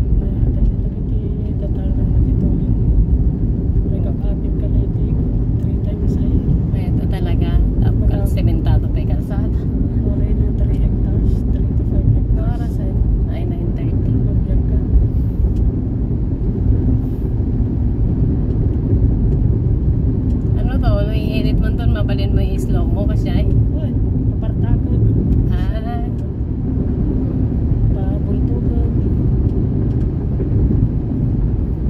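Steady low rumble of road and engine noise inside a vehicle's cabin as it drives along a concrete road.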